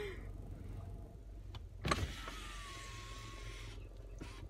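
A car's electric window motor starts with a click about two seconds in, runs with a steady whir for about two seconds, then stops abruptly near the end, over a low steady rumble.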